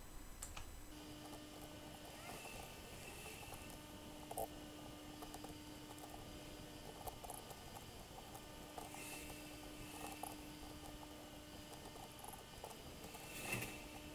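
Quiet room tone with a faint steady hum and a few soft clicks and rustles from a computer mouse being moved and clicked.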